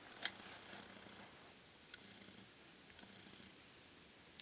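Near silence: room tone with a faint steady low hum, a light click just after the start and a faint tick about two seconds in.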